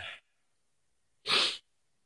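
A single short, sharp burst of breath from a man, about a second and a half in, between stretches of silence.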